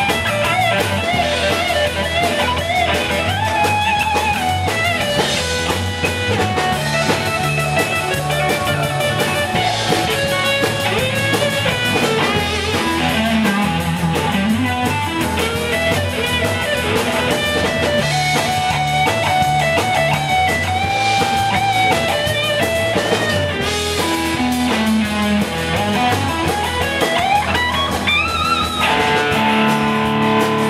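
Live rock band playing, led by an electric guitar solo on a white Fender Stratocaster, with bent notes over the band's steady bass and drums. Near the end the solo climbs in a quick rising run and settles on a held chord.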